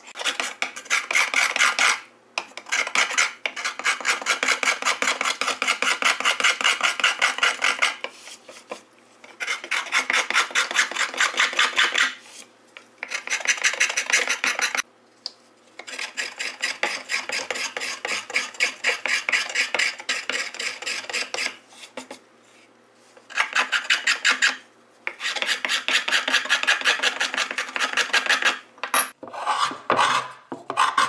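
Hand scraper drawn in quick, short strokes over a carved flamed-maple violin plate, several rasping scrapes a second, in runs of a few seconds broken by brief pauses. This is the scraping stage after carving, smoothing the wood without sandpaper.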